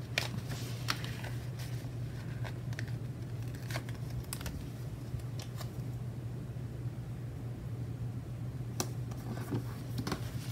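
Paper pages of a sticker book being flipped and handled, giving scattered short rustles and taps, most of them in the first half and one more near the end. A steady low hum runs underneath.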